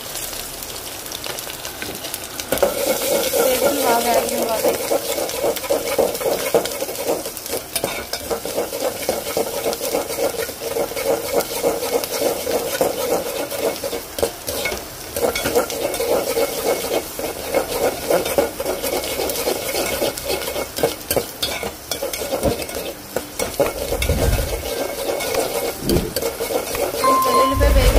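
Garlic cloves and tempering spices sizzling and crackling in hot oil in an aluminium pot, with a metal spoon stirring and scraping against the pot. A brief low thump comes near the end.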